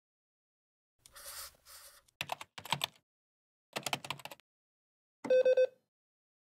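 Three short bursts of computer-keyboard typing, then near the end a brief, loud electronic error buzz, a 'not found' alert.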